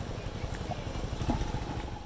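Small motorcycle engine running at idle, a steady rapid low putter.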